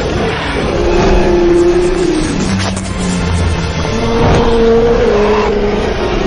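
Film action soundtrack: orchestral music under a loud rushing roar of a giant dragon diving through the air, with held and gliding low tones.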